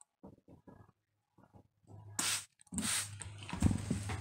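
A trigger spray bottle gives one short, sharp hiss of mist about two seconds in, wetting the worm bin's shredded-paper bedding. After it comes rustling as a hand stirs the damp paper and soil.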